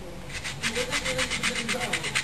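Sandpaper rubbed quickly back and forth over the skin of a foot to take off dead skin: an even run of scraping strokes, about eight a second, starting about a third of a second in.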